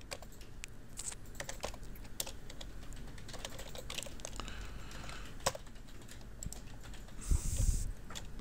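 Computer keyboard typing: keys clicking in irregular runs, with a brief louder thud and rustle near the end.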